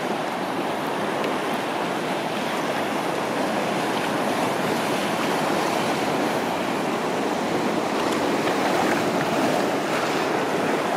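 Steady wash of sea water splashing and running around an inflatable kayak's hull, with surf breaking on a reef behind it.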